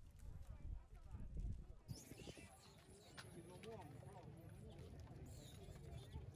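Faint field sound among a troop of long-tailed macaques feeding: low rumbling knocks for the first two seconds, then an abrupt change to short calls that rise and fall, over faint background voices.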